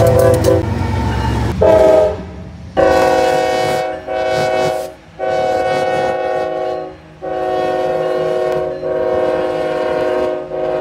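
Freight diesel locomotive air horns sounding a horn salute for railfans: a multi-note chord, first as a few quick short toots, then a series of long blasts separated by brief breaks. The rumble of the passing locomotive is underneath at the start.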